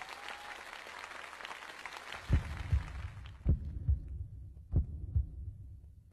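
Applause dying away, then three deep double thumps like a heartbeat, about a second apart, opening a stage performance.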